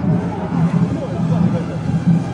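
Street festival parade: many voices of marchers and onlookers over a repeating low beat, about three pulses a second.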